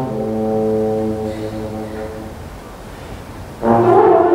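Solo euphonium holding one long low note that slowly fades away. Near the end the full orchestra comes in suddenly and loudly.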